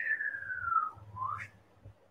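A person's breath blown out through pursed lips with a thin whistle-like tone that slides down in pitch, then a short rising whistle-like tone just past a second in: the controlled exhale of a Pilates roll-up.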